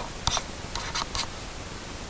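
Plastic stylus writing on a tablet: a handful of short, quick scratching strokes in the first half, then a pause.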